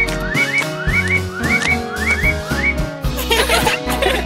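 Cartoon sound effects of short rising whistles, mostly in quick pairs about half a second apart, over children's background music. Near the end the whistles stop and giggling comes in.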